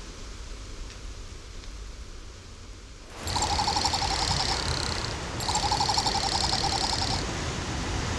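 Faint ambient hiss, then, about three seconds in, two rapid trilling bird calls of about two seconds each with a short break between them.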